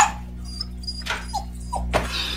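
A pet animal whimpering: several short, high-pitched whines that fall in pitch, over a low steady hum.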